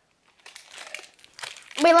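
Plastic snack packaging crinkling in irregular little crackles as it is handled, before a voice starts near the end.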